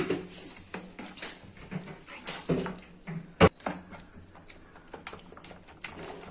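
A steel spoon stirring thick vegetable-laden appe batter in a bowl: wet stirring with scattered clicks and taps of the spoon against the bowl, and one sharp knock about three and a half seconds in.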